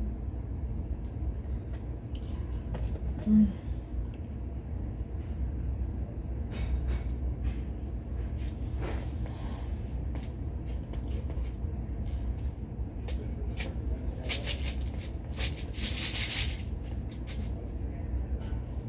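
Small beads being handled: scattered light clicks and a rustle near the end, over a steady low hum. A brief low tone sounds once about three seconds in.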